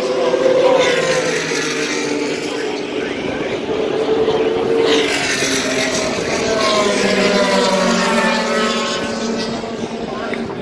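IndyCar race cars' twin-turbo V6 engines running past on the track, their pitch falling as each car goes by, over crowd chatter.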